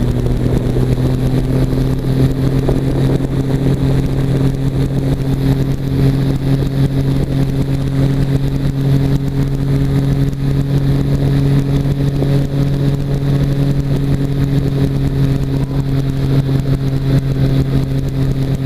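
Weight-shift control trike's engine and pusher propeller running steadily in flight: a constant drone with a strong low hum that holds one pitch throughout.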